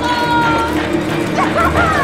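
A woman wailing in anguish: two long, high cries, the second rising and then falling in pitch, over a low, dark film score.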